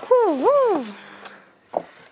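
A boy's voice imitating a power saw: one drawn-out "vroom" that swoops down, up and down again in pitch, then trails off.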